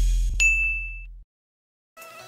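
A single bright ding sound effect rings out about half a second in, over the fading low tail of the intro music. Both stop dead past the middle, leaving silence.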